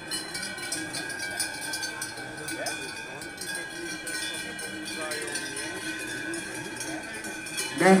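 Large cowbells on Hérens cows clanging together, many bells at once giving a steady ringing, over a murmur of crowd voices.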